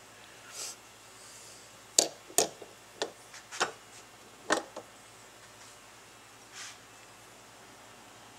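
A run of about six sharp metal knocks and clinks between about two and five seconds in, as the alloy fuel pump body is handled and clamped into a steel bench vise. A soft rustle of handling comes near the start and again near the end.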